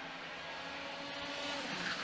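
Racing karts' IAME X30 125cc two-stroke engines as a pack runs by, faint and steady, growing louder towards the end.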